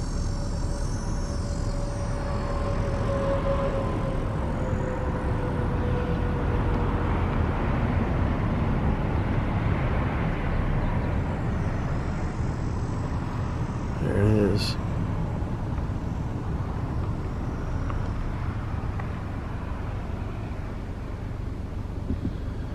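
Car driving slowly, with steady road and engine noise heard from inside the cabin. A faint thin whine slowly falls in pitch over the first several seconds, and a short murmur of a voice comes about two-thirds of the way through.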